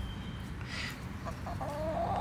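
A chicken clucking: a short pitched call that starts about a second and a half in and carries on past the end, over a steady low rumble.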